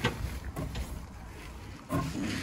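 A few light knocks from a wooden slatted garden gate being handled and moved, over a low steady rumble.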